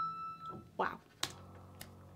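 A woman exclaims 'wow' as a ringing tone fades out, then two sharp clicks about half a second apart as the reaction video is resumed on the computer.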